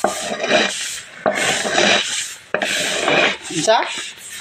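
Wooden rake and broom scraping dried corn kernels across a concrete drying floor, in repeated rasping strokes with a short break between each.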